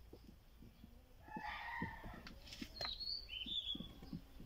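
A rooster crowing faintly: one crow lasting about a second, starting a little over a second in. A few short, high bird chirps follow near the end, over soft low knocks.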